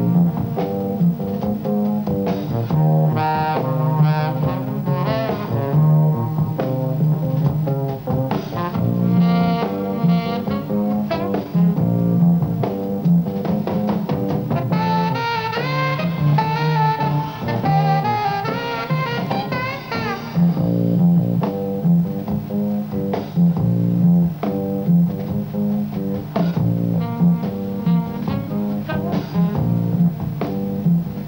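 Live jazz trio of saxophone, double bass and drums: the saxophone plays the lead line over bass and drums. The saxophone climbs high and then stops about two-thirds of the way through, leaving the double bass and drums.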